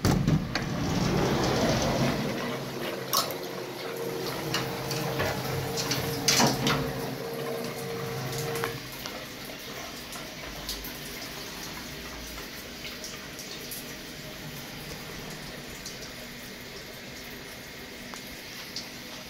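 Okuma Cadet Mate CNC mill with liquid running and dripping inside its enclosure over a steady machine hum, with a few sharp clicks. The hum cuts off about nine seconds in, leaving a quieter steady noise.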